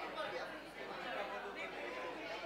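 Faint, low murmuring voices, soft indistinct chatter well below the level of the lecturer's speech.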